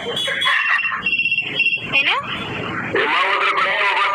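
A person's voice talking on a phone call.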